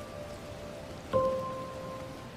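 Steady rain ambience under a slow, soft music track: one mellow struck note sounds about a second in and rings on.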